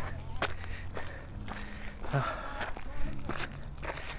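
Footsteps of a hiker climbing a sandy, gritty hill trail: a few uneven steps on dirt and rock.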